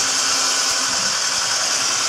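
Electric whisk running steadily in a bowl of mascarpone cream as beaten egg whites are mixed in.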